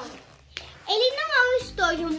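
A young girl's voice speaking in a high pitch, after a brief pause broken by a single short click about half a second in.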